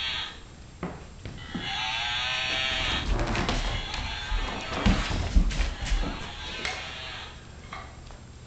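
Battery-operated plush toy playing a tinny electronic song when its head is squeezed. It cuts off just after the start and plays again from about a second and a half in until near the end. Low thuds and rustles mid-way as a mastiff lunges and grabs at it.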